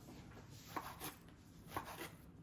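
Two faint short clicks about a second apart, over low room noise.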